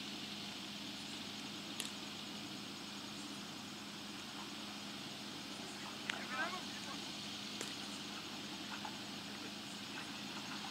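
Steady low hum and hiss of the open ground, with a brief distant shout from a player about six seconds in and a couple of faint clicks.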